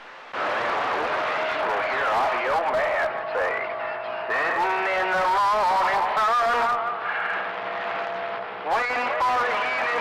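Another station's transmission received on a CB radio and heard through its speaker: a voice mixed with warbling tones that rise and fall, over a steady tone. The sound dips about three-quarters of the way through, then comes back loud.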